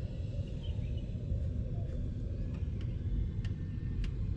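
A steady low rumble with a few faint clicks.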